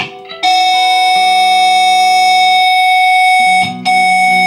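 Guitar band music: after a short choppy chord, a guitar chord rings out and is held for about three seconds while lower notes move underneath. The chord breaks off briefly near the end and comes back with new lower notes.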